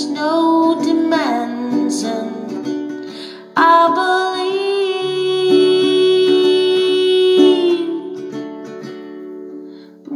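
A woman singing to a nylon-string classical guitar: a sung phrase trails off, then one long held note without words runs from about three and a half seconds in to about eight seconds, over plucked chords.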